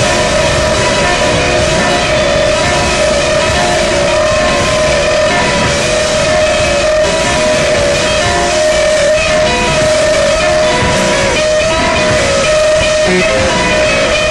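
Noise-rock recording: distorted electric guitar played loud in a dense, unbroken wall of sound, with a few pitches held steady throughout.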